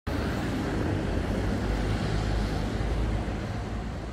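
Wind buffeting an outdoor microphone: a steady low rumble that wavers in strength, over a faint hiss of street background noise.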